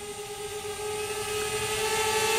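DJI Spark quadcopter in flight, its motors and propellers giving a steady whine with a broad hiss, growing gradually louder.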